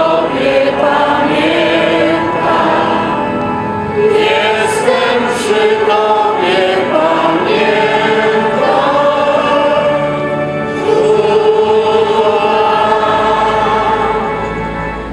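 A choir of several voices singing a slow religious hymn together.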